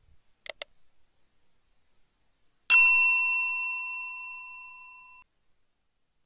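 Two quick clicks, then a single bright bell ding that rings and fades away over about two and a half seconds: a subscribe-button and notification-bell sound effect.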